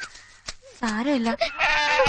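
A goat bleating: two wavering calls, one after the other, starting about a second in.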